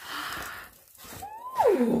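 A cardboard gift-box lid scraping as it is slid off, then a woman's drawn-out vocal 'ooh' that rises and falls in pitch, louder than the scrape.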